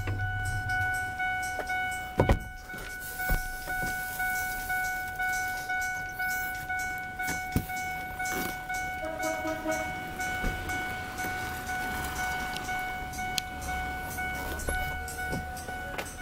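A vehicle warning chime, of the kind a Ford F-250 sounds with a door open, repeating over and over at an even rate on the same steady high tone. Scattered sharp clicks sound now and then.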